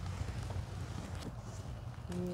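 A few faint clicks and rustles as the pages of a missal on the altar table are handled, over a steady low rumble.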